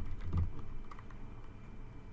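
Long fingernails and tarot cards clicking and tapping on a cloth-covered table: a few quick clicks and soft taps, most in the first half-second, then fainter ticks.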